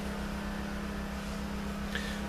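Steady low mechanical hum with a fast, even throb beneath it, like a motor or engine running.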